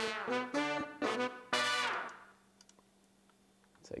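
Sampled funk horn section of trumpets and trombones playing short stabs, panned to opposite sides; the last stab fades out about two seconds in, leaving it much quieter.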